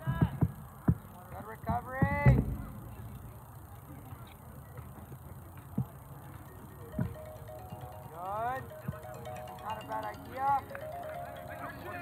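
Distant shouted calls on a soccer field, rising and falling in pitch, with a few dull thumps in the first couple of seconds. From about seven seconds in, more calls come with faint steady tones that step in pitch like music.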